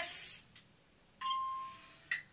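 A single bell-like chime about a second in: one clear ding, a steady tone with a few higher overtones, that starts sharply and fades away over about a second.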